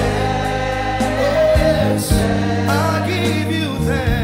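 Gospel worship music: voices singing over electric bass guitar and keyboard, with drum and cymbal hits.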